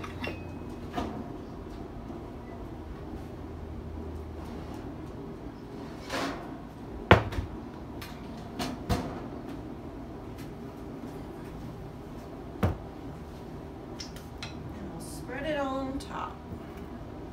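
Offscreen kitchen clatter as a casserole dish is taken out of a small oven: a few scattered knocks and clunks, the sharpest about seven seconds in, over a low steady hum.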